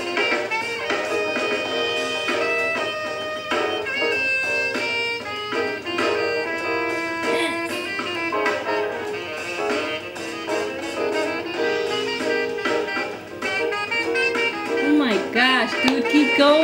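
A live jazz band playing, with a saxophone soloing in held and moving notes over the band.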